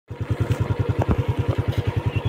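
Small motorcycle engine running at low revs with an even, rapid beat of about ten pulses a second, with a short knock about a second in.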